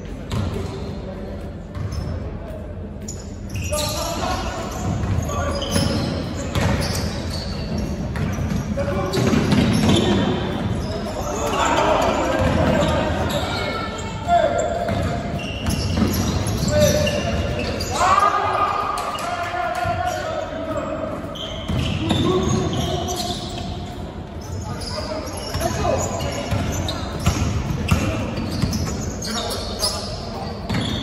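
A basketball bouncing on a wooden gym floor during play, echoing in a large hall, with indistinct calls from players.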